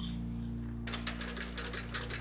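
Industrial sewing machine stitching leather, starting a little under a second in as rapid, even clicking of about six stitches a second, over background music.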